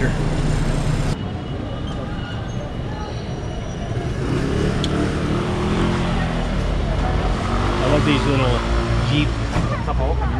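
Street traffic: a motor vehicle engine runs steadily close by. Voices of passers-by come in near the end.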